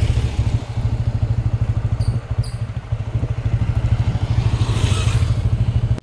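Motorcycle engine running, a low rumble with a fast, even pulse. Two short high chirps come about two seconds in.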